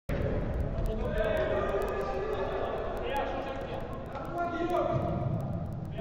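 Men's voices calling and talking across an indoor football pitch, echoing in the large hall, with occasional thuds of the ball.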